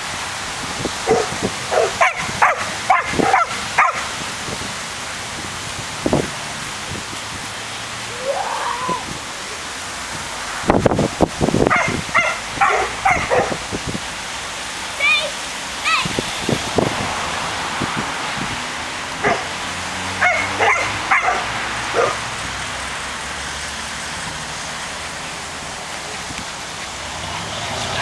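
Entlebucher Mountain Dog barking in short bursts, several clusters a few seconds apart, over a steady outdoor hiss.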